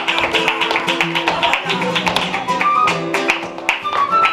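Flamenco guitar playing with a dancer's heeled footwork striking a wooden floor and hand-clapping (palmas), many sharp strikes a second over the guitar.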